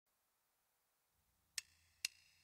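Near silence, then one short, sharp click about one and a half seconds in, the first of an evenly spaced count-in of clicks that leads into drum-backed music.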